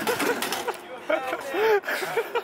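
Excited shouting and whooping voices.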